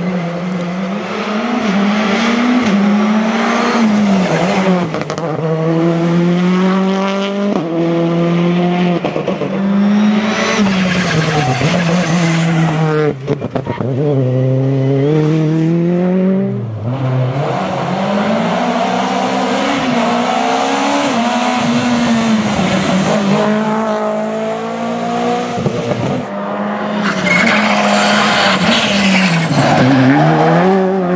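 Rally2 cars at full attack on a tarmac stage, several passing one after another. Their turbocharged four-cylinder engines rev hard, the pitch climbing through each gear and dropping sharply at every shift and lift-off.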